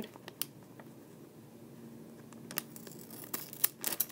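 Scissors cutting open a plastic foil blind bag: a few quiet, sharp snips, most of them in the last second and a half.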